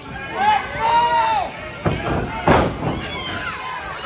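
Spectators shouting, with high children's voices among them, then two heavy thuds about halfway through as a body hits the wrestling ring mat; the second thud is the loudest.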